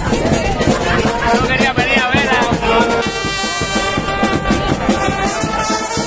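Live street-band music with brass playing, mixed with the voices of a packed crowd; from about halfway a long note is held.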